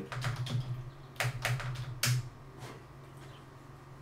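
Computer keyboard being typed: a quick run of about eight keystroke clicks over the first two seconds, then the typing stops.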